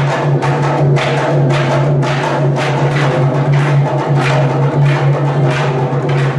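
Tharu stick dance: wooden sticks clacking together at about two strikes a second, over two-headed barrel drums, with a steady low hum underneath.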